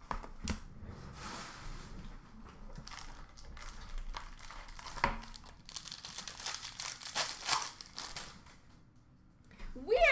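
Card pack wrapper crinkling and tearing as a pack of hockey cards is ripped open, with a few sharp clicks. The crinkling is thickest about six to eight seconds in, then dies away.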